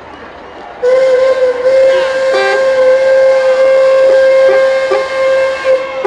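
Horn, most likely the passing parade truck's air horn, blowing one long, loud, steady blast at a single pitch. It starts about a second in and lasts about five seconds.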